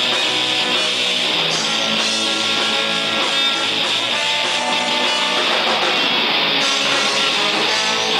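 A ska band playing live, loud and steady: strummed electric guitars with a trombone and saxophone horn section.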